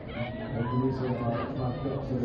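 Several people's voices calling and chattering over one another, with no single voice standing out.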